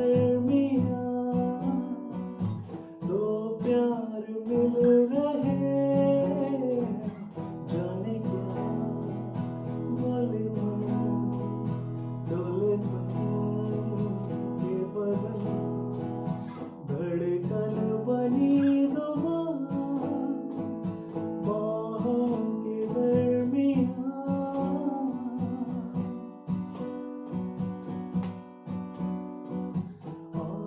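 Steel-string acoustic guitar strummed in chords, with a man's voice singing along; about a third of the way in a chord is left ringing for several seconds before the strumming picks up again.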